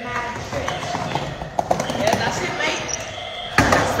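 Skateboard on a hard tile floor: the board knocking and clattering on the tiles, with one loud knock near the end, under voices.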